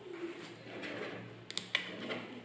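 A few sharp clicks about one and a half seconds in, from small magnetic balls and a plastic card being handled on a table. Underneath is a faint, low cooing sound.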